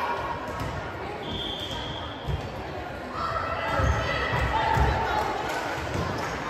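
Volleyball bouncing on a hardwood gym floor, a few low thumps in the second half, over voices echoing in a large gym.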